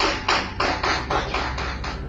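Rapid gunfire in a firefight: a fast string of shots, about four to five a second, with a low rumble beneath.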